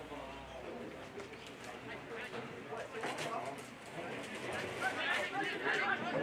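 Distant shouts and calls of footballers and onlookers out on the field, getting louder near the end, with a bird calling.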